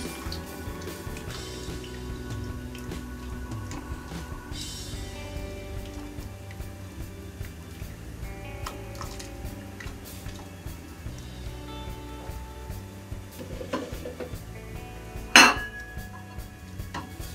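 Plastic spoon stirring milk in an aluminium pressure-cooker pot, with small clicks and scrapes against the pot's side and one sharp knock near the end.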